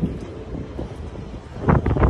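Wind buffeting the microphone as a low rumble, growing louder near the end.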